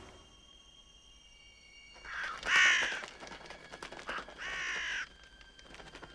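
Crows cawing: two harsh calls, the first and louder about two seconds in, the second about a second and a half later.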